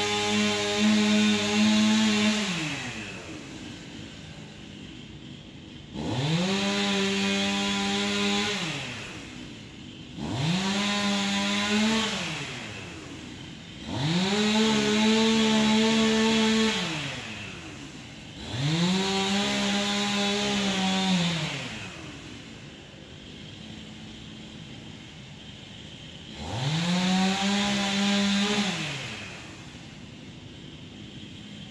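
Chainsaw engine revving: it is at full throttle at the start, drops to idle, then revs up five more times, each rev rising quickly, holding steady for two to three seconds and falling back to a quiet idle.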